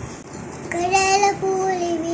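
A young girl singing a Tamil Christian children's song. She starts about two-thirds of a second in and holds long, steady notes with short breaks.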